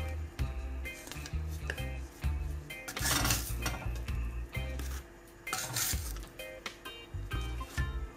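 Wooden spatula scraping and knocking against a cast-iron frying pan and a ceramic plate as baked eggplant halves are lifted out, with a few longer scrapes, over steady background music.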